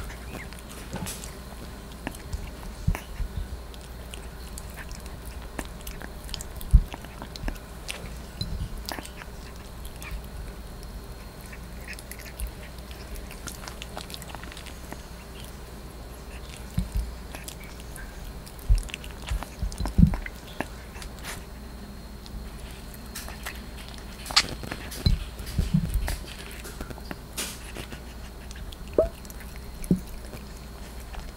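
Yorkie puppy chewing ground raw meat from a plastic dish right next to the microphone: irregular small clicks and smacks, with louder knocks now and then.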